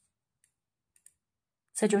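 A few faint, sharp clicks of plastic and metal knitting needles knocking together as the knitted piece is handled. A woman starts speaking near the end.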